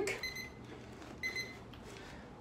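Two short, high electronic beeps about a second apart, part of a steady once-a-second series of beeps.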